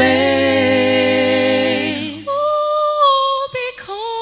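A cappella vocal ensemble singing a held chord in several parts, with a low bass line under it. After about two seconds the chord thins to a single voice holding one steady note, followed by a few short notes.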